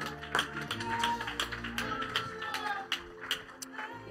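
Yamaha MOX synthesizer keyboard playing soft held chords that change every second or so, with scattered, irregular hand claps.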